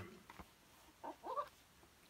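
A man's short, soft vocal sound with a rising pitch about a second in, preceded by a faint click.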